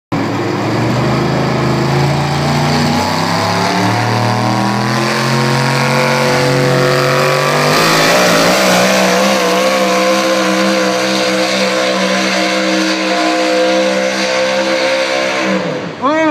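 Pickup truck engine at full throttle pulling a weight-transfer sled. Its pitch climbs over the first several seconds, holds high and steady, then falls away near the end as the run ends.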